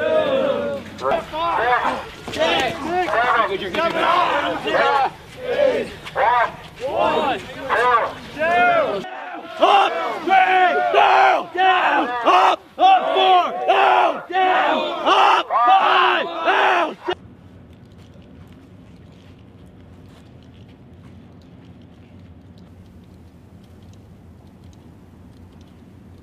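A group of military trainees shouting together in loud, overlapping yells, in quick repeated bursts. The shouting cuts off suddenly about 17 seconds in, leaving only a faint steady background noise.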